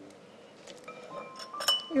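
A utensil clinking lightly several times against a glass mixing bowl as yogurt is spooned into beaten eggs for cake batter. The clinks are quiet, with short ringing, and fall in the second half.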